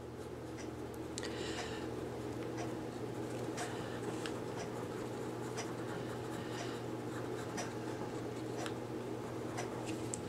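Orange Crayola wax crayon rubbing on cotton quilting fabric in small overlapping circles: faint, soft scratchy strokes that come and go about once a second. A steady low hum runs underneath.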